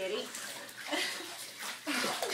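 Water splashing and sloshing in a bathtub as a cat is washed, with faint voices under it.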